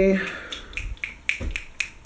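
A quick run of light, sharp clicks and taps, about four a second, with one dull low thump about one and a half seconds in.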